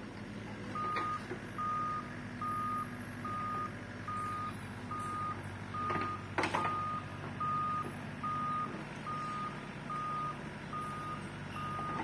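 Excavator's travel alarm beeping steadily, one unchanging tone a little more than once a second, starting about a second in, over the low steady running of the machine's engine. A single sharp knock sounds about halfway through.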